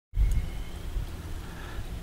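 Low rumble of wind on the microphone, starting suddenly out of silence with a brief louder bump.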